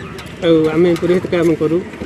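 A man speaking, his voice continuing as before and after.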